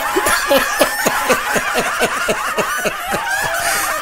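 A person laughing in a rapid run of short, falling 'ha' sounds, about five a second, which ease off near the end.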